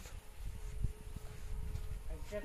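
Low rumble of wind and handling on a hand-held phone microphone, with a faint steady hum joining about half a second in and two faint clicks near the middle.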